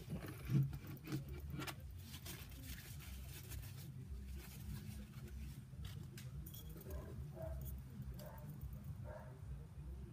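Low steady room hum with scattered faint clicks and taps, and a brief louder sound about half a second in.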